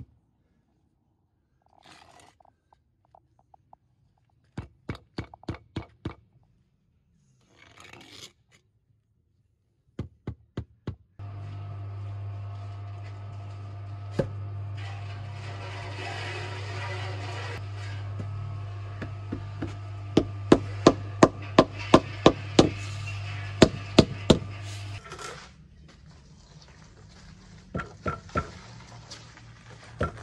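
Rubber mallet tapping sandstone paving flags down onto their mortar bed to bring them level, in short runs of quick knocks. The loudest and longest run comes about two-thirds through. A couple of brief scraping sounds come between the runs early on.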